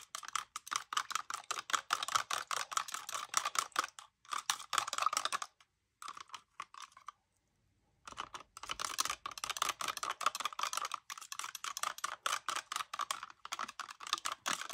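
Metal palette knife stirring and scraping thick white paste in a plastic cup: a rapid, dense run of clicks and scrapes, with a break of about two seconds around the middle.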